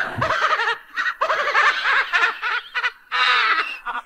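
Laughing in several runs of quick, short repeated bursts with brief pauses between them.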